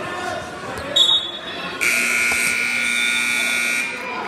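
Gym scoreboard buzzer giving one steady electronic tone for about two seconds, starting just before the middle and cutting off just before the end, over background voices in the gym. A brief shrill tone sounds about a second in.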